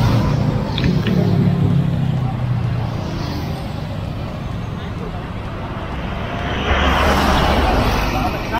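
Roadside traffic going by, with indistinct talk from people close by; a passing vehicle's noise swells near the end.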